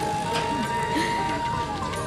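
Faint background music with one long held note, under a low background hum.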